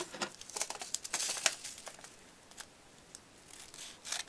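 A seed packet crinkling as it is handled and cut open with scissors: a cluster of sharp snips and rustles in the first second and a half, quieter in the middle, then a few more near the end.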